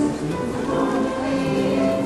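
Middle school chorus singing, many voices holding sustained notes together in harmony.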